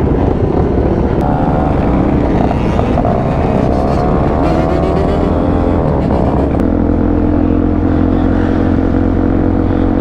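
2009 Suzuki DR-Z400SM single-cylinder supermoto engine running under the rider as the bike accelerates, its pitch rising through the middle. About two-thirds in the note drops suddenly and then holds steady as the bike cruises.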